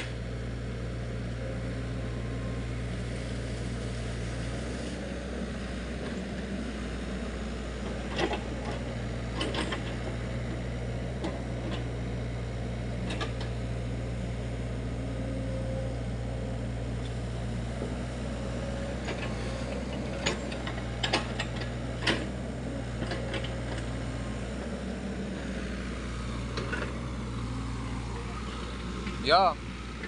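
Sany SY55C mini excavator's diesel engine running steadily as it digs, with a few short sharp knocks scattered through.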